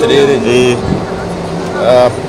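A man talking in a local language, with a steady low hum, likely street traffic or an engine, under the voice.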